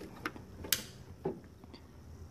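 Plastic wiring connector being pushed onto a three-wire coolant temperature sensor, snapping into place with one sharp click a little under a second in, among a few faint handling ticks.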